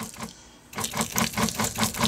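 A hand trigger spray bottle misting water onto potted cuttings: a fast, even run of short spritzes, about six a second, starting a little under a second in, to keep the soil moist.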